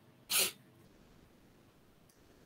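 One short, breathy hiss from the lecturer at the microphone, a sharp breath or sniff, about a third of a second in, then silence.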